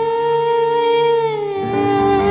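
Female singing voice holding a long wordless note with a slight vibrato, stepping down in pitch about one and a half seconds in, over sustained keyboard accompaniment.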